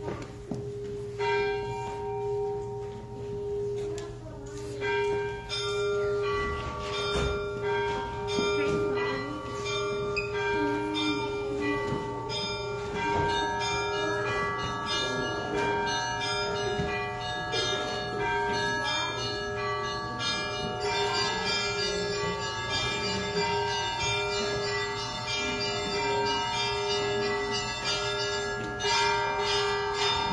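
Several church bells chiming, with struck notes at many pitches that start sparse and overlap more and more densely from about twelve seconds in, over one steady ringing tone held throughout.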